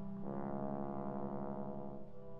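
Solo trombone holding one long, low note with vibrato over a wind band's sustained accompaniment. The note begins about a quarter second in and is held almost to the end.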